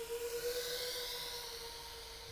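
A 7-inch FPV quadcopter's motors and propellers heard from the ground: a steady whine over a faint hiss, slowly fading as the quad flies away.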